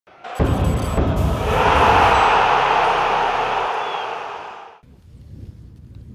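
Channel logo sting: a heavy hit about half a second in, then a loud noisy swoosh that swells and fades out before the fifth second.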